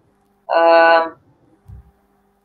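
A person's voice holding one steady hesitation sound, an "eee" or "mmm" at a single pitch, for about half a second, then a soft low thump near the end.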